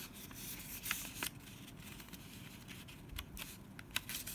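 A sheet of thin coloured paper being folded and handled by hand: crisp rustling with several sharp crackles of the paper.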